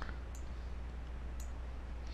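A computer mouse clicking lightly three times over a low steady hum, as counters are picked up and dropped on screen.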